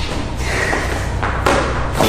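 A thud as a rolled foam exercise mat lands, about a second and a half in, after a brief rustle.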